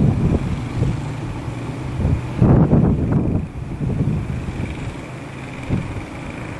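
Wind buffeting the microphone in a steady low rumble. A louder rumble swells for about a second, some two and a half seconds in, then fades.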